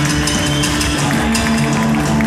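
Live psychobilly band playing loudly: slapped upright bass and electric guitar over a run of sharp percussive hits, with the notes shifting to a new chord about a second in.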